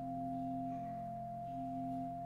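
Church organ playing slow, soft music with pure, flute-like sustained notes: a high note held throughout while lower notes change beneath it.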